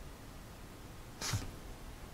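A person's short, sharp breath out through the nose, like a snort, about a second in.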